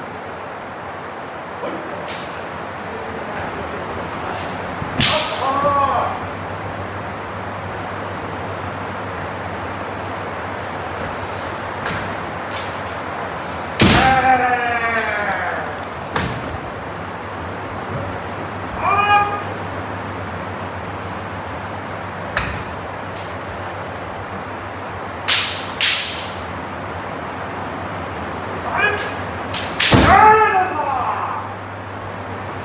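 Kendo sparring: kiai shouts from armoured players, the longest a drawn-out call falling in pitch about 14 seconds in, mixed with sharp cracks of shinai strikes and stamping footwork on the wooden floor. A steady low hum runs underneath.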